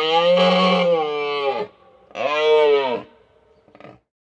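Large bull moose giving mating calls during the rut: a long drawn-out call that drops in pitch as it ends about a second and a half in, then a shorter second call that rises and falls.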